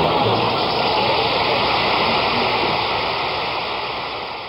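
Studio audience applauding, a dense, steady clapping that slowly dies away near the end.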